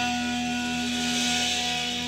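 Electric guitar holding a chord that rings out as a steady tone and slowly fades, with no new strikes: the last chord of the song dying away.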